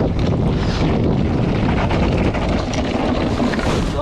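Wind rushing over the camera microphone, with tyres rumbling on a dirt track and the frame rattling over bumps, as an electric mountain bike descends at high speed, the rider losing control.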